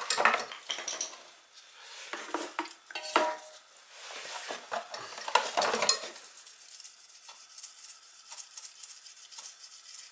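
Metal tools scraping and clinking against burner parts in a sheet-metal drip pan as the parts are scrubbed clean: busy bursts of scraping over the first six seconds, then only light scattered ticks.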